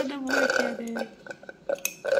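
Toddlers sipping a drink through metal straws, with gurgly, low-pitched voiced sounds in two short stretches: a longer one in the first second, then a brief one after.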